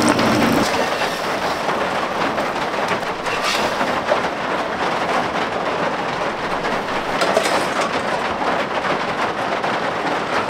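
Steady heavy rain drumming on a cabin roof, a dense, even crackling patter.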